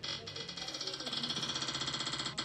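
Spin-the-wheel phone app's ticking sound effect: a rapid, even run of short high clicks, about ten a second, as the on-screen wheel spins.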